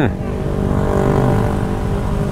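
Motor scooters and motorbikes passing close by in road traffic: a steady engine hum over a low rumble.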